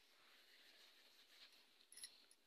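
Near silence: a faint steady hiss, with one small click near the end.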